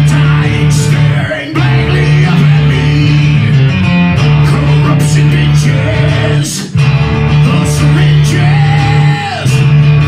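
Live heavy rock band: loud electric guitar and bass playing a sustained riff, with sharp percussive hits and a man singing. The riff breaks off briefly twice.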